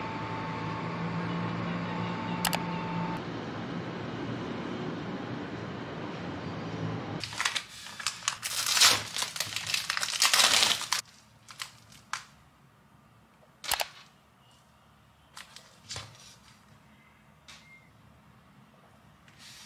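After several seconds of steady background noise, plastic film crinkles and tears for about four seconds as it is pulled off a plastic takeout food tray. A few light clicks and taps follow.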